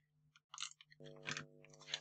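Faint short scratchy clicks and crackles of a tape glue roller dabbing small dots of adhesive onto card, with light handling of paper. A faint steady hum joins in about halfway through.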